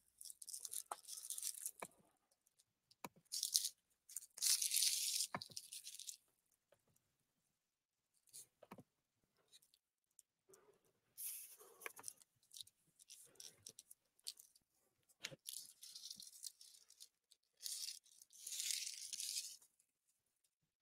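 A pack of cigarettes being opened by hand: plastic wrapping and paper tearing and crinkling in several short bursts, with small clicks and taps between them.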